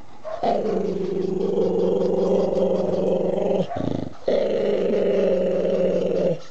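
A dog making two long, drawn-out growls, the first about three seconds, the second about two, with a short break between. These are the playful growls of a dog being petted on the face, not aggression.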